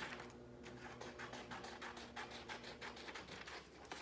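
Scissors cutting through a sheet of printer paper: a quick, steady run of short snips.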